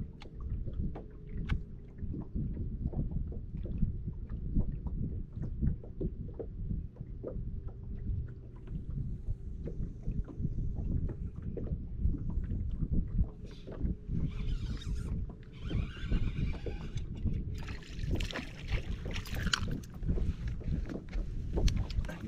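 Small waves lapping and slapping against a bass boat's hull under a faint steady hum, with a couple of brighter splashy bursts in the second half as a bass is brought to the boat.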